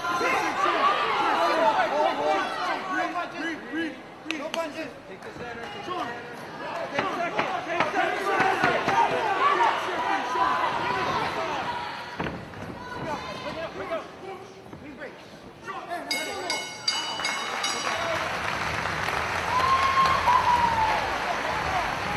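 Cageside crowd in a gym hall shouting and yelling, many voices overlapping through an MMA bout. About sixteen seconds in, a bell rings with several quick strikes, signalling the end of the round.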